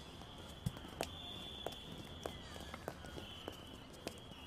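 Faint background ambience: scattered light clicks and taps at irregular intervals over a faint steady high-pitched tone.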